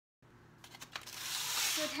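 Aluminum foil crinkling and crackling as it is pressed and crimped tightly around the edges of a foil baking tray, starting faint and growing louder, with a few sharp crackles. A woman begins to speak at the very end.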